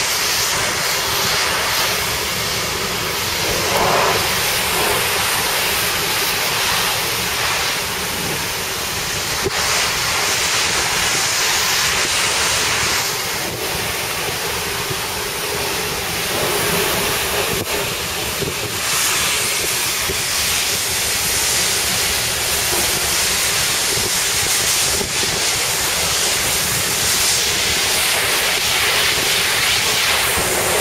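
Steady rushing noise of wind and sea, with wind buffeting the microphone.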